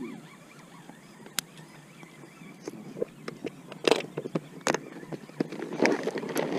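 Scattered sharp clicks and knocks of fishing gear being handled in an inflatable boat, sparse at first and more frequent in the second half.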